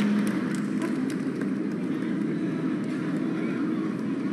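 Applause from a large audience in an arena, a steady crackle of many hands clapping.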